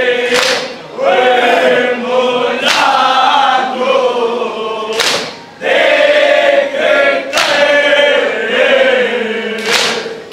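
Group of men singing an Urdu noha (lament) in unison, with five sharp collective slaps about every two and a half seconds: the mourners beating their chests in matam to the rhythm of the lament.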